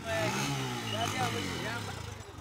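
Small motorcycle engine running as a motorcycle taxi rides up, its pitch rising and falling once early on and then holding steady. Voices can be heard in the background.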